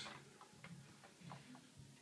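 Near silence: room tone with a few faint, irregular ticks.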